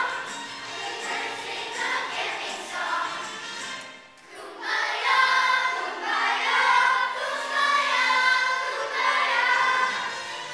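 A children's choir singing together on stage. The singing breaks off briefly about four seconds in, then comes back louder.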